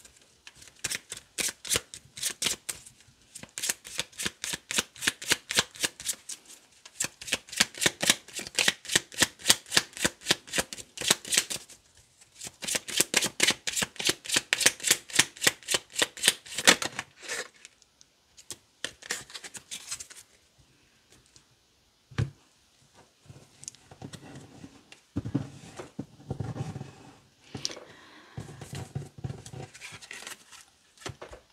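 A deck of Lenormand cards being shuffled by hand: long runs of rapid card-on-card flicks, several a second, with short breaks between runs. Over roughly the last third the shuffling stops and only softer, sparser handling of the cards is heard.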